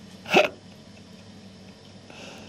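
A man's single short, sharp vocal outburst, rising in pitch, about a third of a second in.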